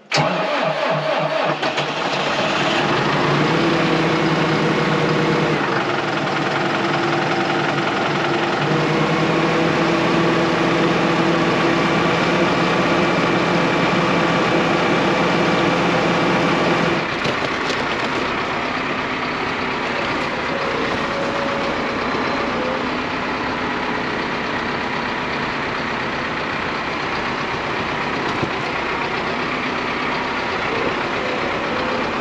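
Valtra N123 tractor's four-cylinder diesel engine cranking and catching, then running steadily with a throbbing note. About halfway through the note changes and the engine runs slightly quieter.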